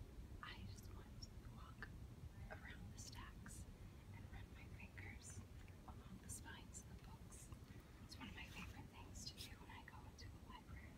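A woman whispering faintly, over a steady low hum.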